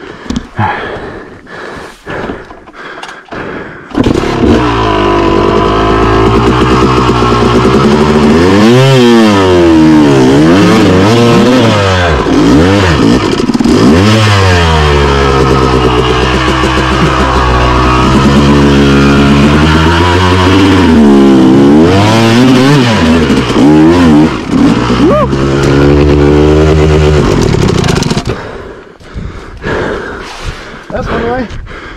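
Yamaha YZ250 two-stroke dirt bike engine, fitted with a flywheel weight: a few knocks and clatter, then the engine starts about four seconds in and is revved up and down again and again, before it stops about three seconds from the end.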